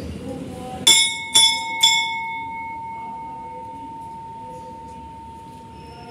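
Hanging brass temple bell rung by hand three times in quick succession, about half a second apart, starting about a second in. It then rings on with one clear tone that slowly fades.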